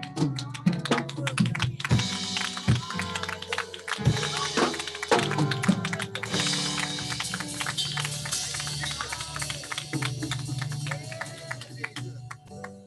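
A live gospel band with drum kit and keyboard plays, with hands clapping along in quick, frequent strokes. From about six seconds in, a keyboard chord is held steadily under the clapping.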